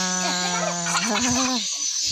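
A voice holding a long, steady-pitched note, then a shorter, slightly higher one, with other voices faintly underneath.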